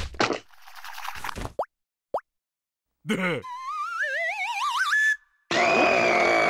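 Cartoon sound effects: a sharp hit at the start, two quick rising plops, then a wavering, whistle-like tone climbing in pitch for almost two seconds. Near the end comes a loud, held cry.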